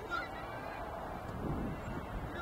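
Open-air sports-field ambience with a short, high honk-like call just after the start, over a steady low background noise.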